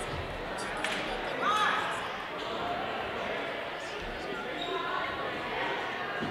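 Chatter of players and spectators echoing in a large gym, with a ball striking the hardwood floor about a second in and sneakers squeaking on the court just after.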